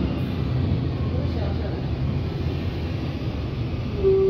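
Interior noise aboard a moving Alexander Dennis Enviro200 MMC single-deck bus: a steady low drone from the diesel engine and drivetrain.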